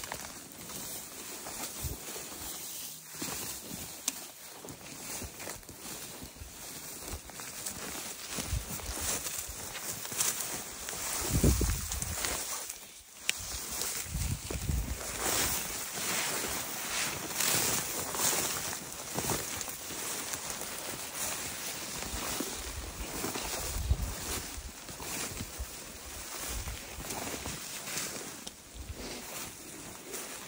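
Walking through low shrubs and small spruce: steady rustling of branches and footsteps through brush, with a few low rumbles on the microphone, the loudest about eleven seconds in.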